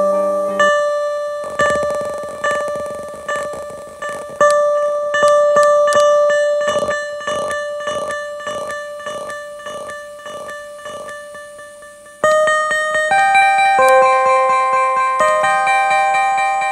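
Vintage Japanese electronic keyboard synth fed through a Behringer DD400 digital delay: a single note repeats as a long train of fading echoes, the repeats coming closer together as the delay time knob is turned. About twelve seconds in, a louder run of new notes climbs upward, each trailed by echoes.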